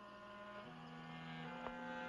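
Orchestral underscore swelling in: held string chords that grow steadily louder, moving to a new chord about two-thirds of a second in and again near the end.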